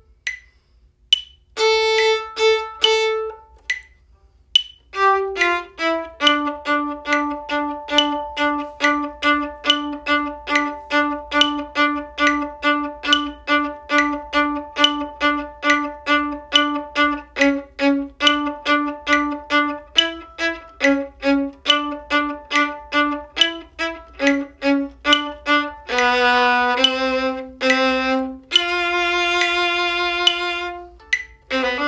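Bowed string instrument playing the bass part of a symphony finale in time with a slow metronome. A few short notes and pauses come first, then a steady run of short detached notes at about two to three a second, ending in a few longer held notes.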